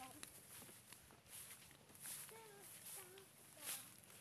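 Near silence: a few faint rustles of footsteps in grass and faint snatches of a distant voice.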